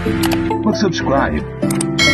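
Music with a voice over it and a few sharp click sound effects, the last near the end, as a cursor clicks the subscribe button of a stock subscribe animation.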